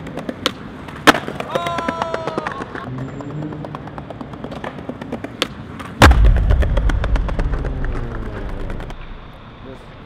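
A skateboard popped for a trick down a set of stone stairs: a sharp crack about five and a half seconds in, then a hard landing half a second later. The wheels then rumble loudly across the stone paving and fade over about three seconds. Sharp board clicks come earlier, in the first second or so.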